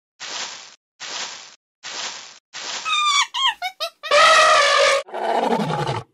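Channel logo sting built from animal sound effects: four evenly spaced noisy beats, then a run of short squeaky calls falling in pitch, a loud held call, and a roar sliding down in pitch.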